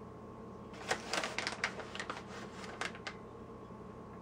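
Plastic shredded-cheese bag crinkling and crackling as mozzarella is shaken out and sprinkled by hand, a quick run of crackles starting about a second in and lasting about two seconds.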